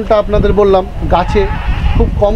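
Speech: a man talking, over a low rumble.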